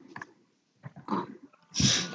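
A person's voice over a video-call line: short murmured sounds at the start and about a second in, then speech beginning near the end.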